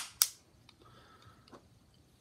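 Two sharp clicks right at the start, a fifth of a second apart, then faint rustling and a soft tick about one and a half seconds in: handling noise as a Springfield Mil-Spec 1911 pistol is fumbled out into the hand.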